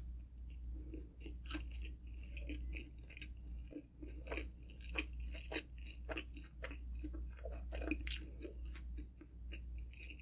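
Close-miked chewing of a mouthful of pepperoni pizza with the mouth closed: irregular wet smacks and small crunches, a few each second.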